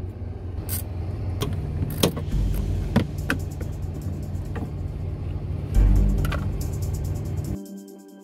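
A steady low engine rumble in the background, with sharp clicks and knocks of a screw and plastic trim pieces being handled. Just before the end it cuts abruptly to background music.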